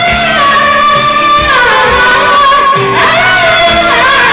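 Two women singing karaoke into microphones over a videoke backing track, with long held notes that slide down about a second and a half in and climb back up near the end.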